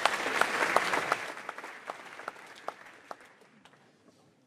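Audience applause that is loudest at first, then dies away over about three seconds into a few scattered claps.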